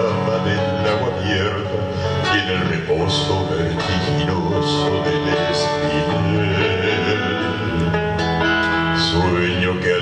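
Live male vocal group singing in harmony, accompanied by acoustic guitar.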